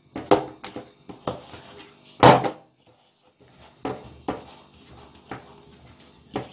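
A fork clicking and scraping against a ceramic bowl as it mashes soft margarine: a string of short, irregular knocks, the loudest a little over two seconds in, then fainter taps.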